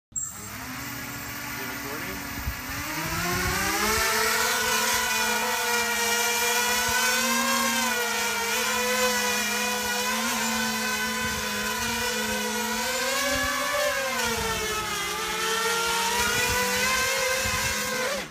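Quadcopter's electric motors and propellers whining under a heavy load of over 3 lb, about twice its own weight, with three batteries strapped on. The whine is quieter at first, climbs in pitch as the throttle comes up two to four seconds in, wavers up and down, dips about fourteen seconds in, and cuts off suddenly at the very end.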